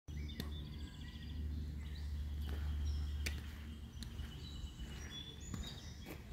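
Several birds chirping and trilling, with a low rumble in the first half that fades out, and a few sharp clicks scattered through.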